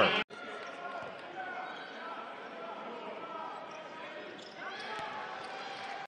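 Basketball arena game sound: a steady low crowd murmur, with a ball bouncing on the hardwood court now and then.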